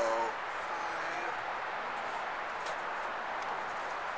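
Steady outdoor background noise, a low even hiss, after the tail of a man's word at the start and a brief murmured sound about a second in.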